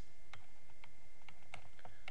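Faint, irregular light clicks and taps of a stylus on a pen tablet while handwriting, about seven in two seconds, over a steady background hum with a thin high whine.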